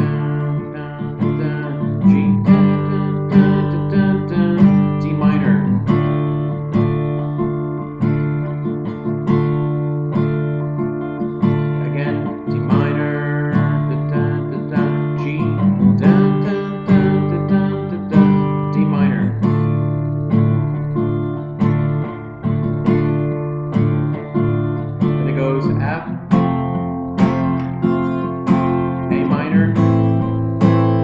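Acoustic guitar strummed steadily, changing back and forth between D minor and G chords.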